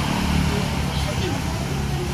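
Motorcycles passing on the road with their engines running steadily, while voices talk in the background.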